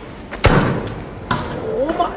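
A loud thump that echoes around a large hall about half a second in, then a second, lighter knock about a second later, followed by a person's voice starting up.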